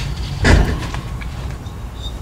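A single knock about half a second in as a bare, non-running 66 cc two-stroke motorized-bicycle engine is handled on a metal workbench, followed by low rumbling handling noise.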